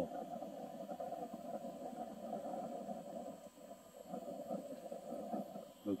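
Small handheld USB fan running, blowing air into the lower hole of a burning log stove to fan the kindling: a faint steady whir with a light rush of air.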